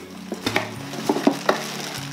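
Thin plastic wrapping crinkling and crackling as a bagged plush teddy bear is pulled out of a cardboard box, with a cluster of sharp crackles through the middle.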